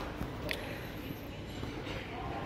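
Steady low rumble of a Toshiba passenger lift car travelling down its shaft, heard through the closed landing doors, with one brief click about half a second in.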